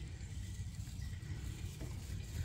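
Low, steady rumble of outdoor background noise, with no distinct event.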